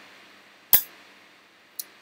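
A single sharp click about three-quarters of a second in, then a faint tick near the end, as a Cisco access point is plugged in with its mode button held down to force it into recovery mode.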